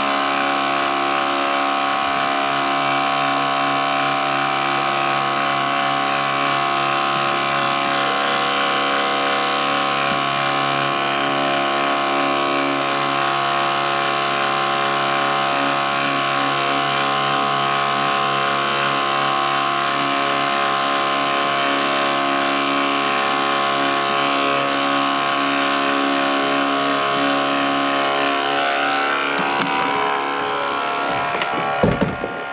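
Small electric sprayer's pump motor running steadily, a constant many-toned whine, while enzyme treatment is sprayed onto carpet from a hand wand.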